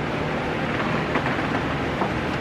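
Steady room noise: a continuous even hiss with a low hum underneath and no distinct events.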